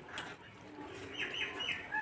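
A bird calling in the background: three quick falling chirps a little past the middle, over faint scattered clicks.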